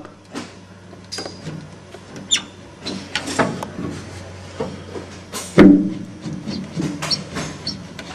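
Scattered metal knocks and clunks as an aircraft control tube is pushed over against its stop, the loudest about halfway through with a short ring. The tube shifts in its mount because the bearing it runs in is worn.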